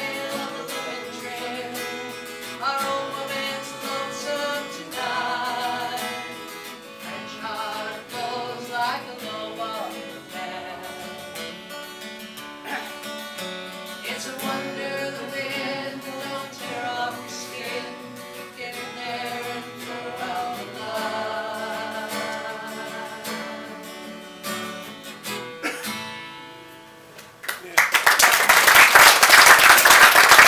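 A woman singing to her own acoustic guitar at the close of a folk song, then audience applause breaking out about two seconds before the end, louder than the song.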